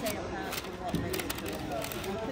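A paper bakery bag crinkling in short, light ticks as a child's hand rummages inside it, over a background murmur of voices.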